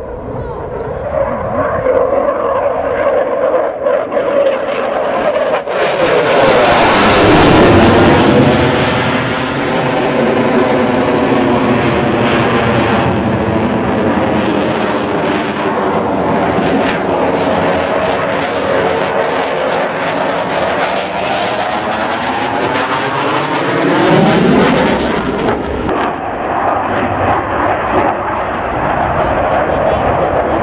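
Dassault Rafale fighter jet's engines at display power as the jet manoeuvres overhead. The jet noise builds over the first few seconds and is loudest a few seconds in, with a sweeping, swirling change in tone as the aircraft passes. It swells loud again near the end.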